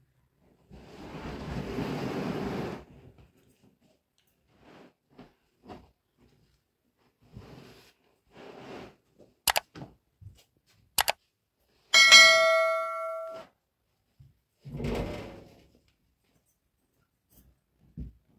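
Objects being handled: a shuffling scrape, then two sharp clicks, then a metal object clanging and ringing for about a second and a half, followed by another short scrape.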